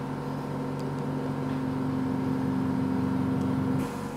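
A steady machine hum made of several low tones, growing slightly louder, then cutting off just before the end.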